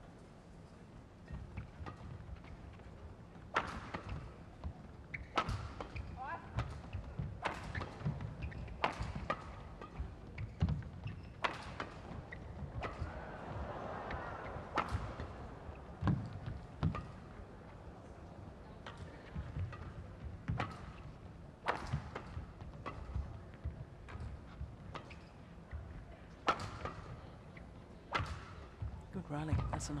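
Badminton doubles rally: a long run of sharp cracks as rackets strike a feather shuttlecock, about one hit a second, with short squeaks of court shoes on the mat between shots.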